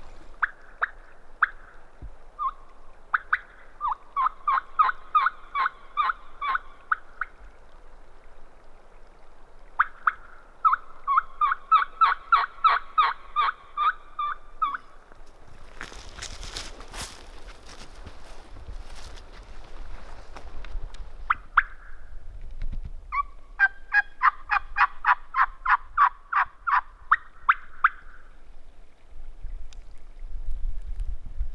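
A turkey call sounding long runs of sharp hen-turkey calls, about four to five notes a second, in three series of a few seconds each. It is being used to strike a gobbler and get him to answer. Between the second and third runs come a few seconds of crunching and knocking.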